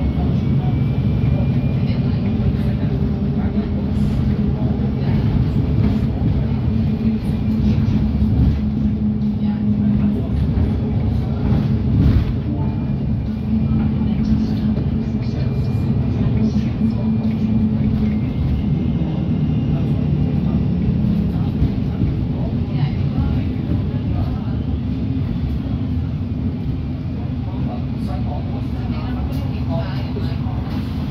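Alexander Dennis Enviro200 MMC single-deck bus heard from inside the saloon while under way: a steady engine and drivetrain drone whose pitch shifts up and down with road speed, over road noise and interior rattles. A sharp knock about twelve seconds in, probably a bump in the road or a rattle from the body.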